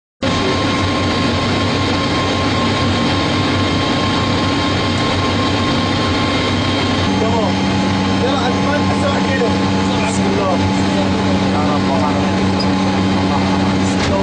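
Steady machine hum from the running guidance-console equipment, several held tones at once, with a lower steady tone joining about halfway through.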